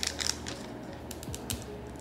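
Thin clear plastic wrapper crinkling and crackling as it is peeled off a small collectible figure by hand: a burst of crinkles at the start, then scattered light clicks.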